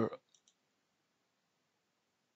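A drawn-out spoken 'or' trails off at the start, then two faint computer mouse clicks about half a second in.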